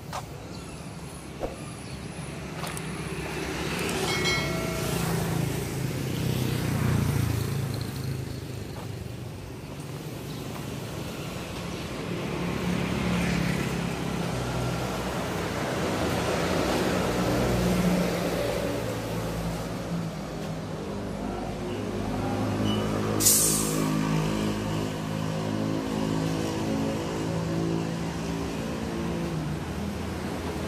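Vehicle engines running nearby, their pitch rising and falling, with a short sharp hiss of compressed air about two thirds of the way through, from the tyre inflator hose at a tyre valve.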